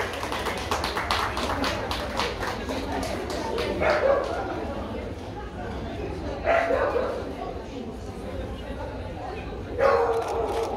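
Dog barking three times, a few seconds apart, over a background of chatter in the hall.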